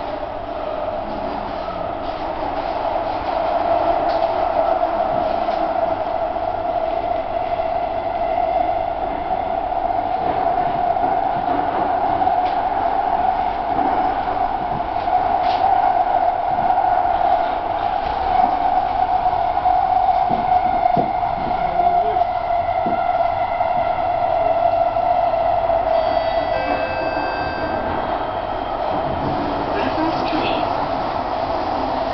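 Singapore MRT train running at speed through a tunnel, heard from inside the carriage: a steady, loud rush with thin high whining tones over it.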